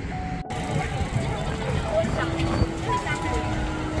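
Busy outdoor street ambience: many people's voices chattering over a steady low traffic rumble, with a few held musical tones.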